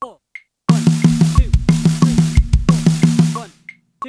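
Drum kit playing one bar of an even sixteenth-note linear fill at 90 BPM, grouped 6-6-4: single strokes on the snare drum broken by two pairs of bass drum hits. It starts about three quarters of a second in and stops about a second before the end. Underneath, a metronome keeps clicking and speaking the count.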